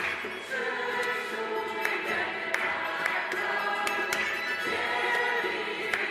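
Choir singing a Polish worship song in held notes over an accompaniment with sharp percussive accents.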